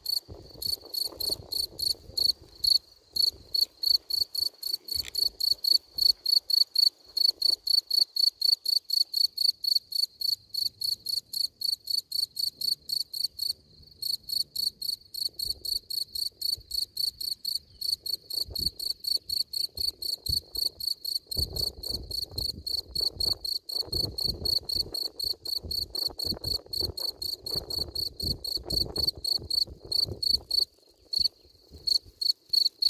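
Male field cricket (Gryllus campestris) stridulating with its forewings raised at its burrow entrance. It sings a steady run of shrill chirps, about three a second, broken by a few short pauses. This is the male's calling song. A faint low rustle lies under the song in the last third.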